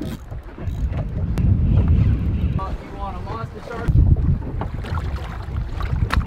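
Wind buffeting the microphone in low gusts, strongest about a second in and again near four seconds, with a faint voice in between.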